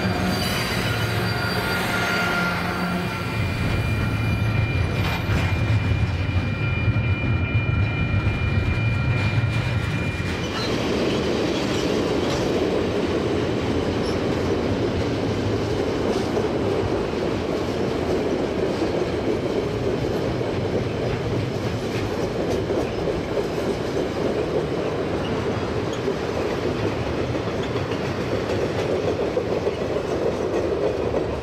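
KiwiRail DX-class diesel-electric locomotives passing close by, their engines running low with a steady high whine over them. About ten seconds in this gives way to a steady rumble of freight wagons rolling over a concrete river bridge.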